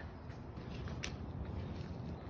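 Faint footsteps and phone-handling noise of someone walking on concrete while filming, over a low steady background, with a single sharp click about a second in.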